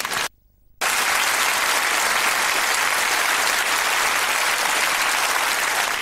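Studio audience applauding steadily. The sound cuts out briefly for about half a second near the start, then the applause comes back in full.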